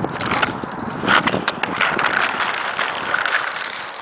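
Inline skate wheels rolling over rough asphalt close to the microphone: a continuous gritty rolling noise broken by many short scrapes and clicks.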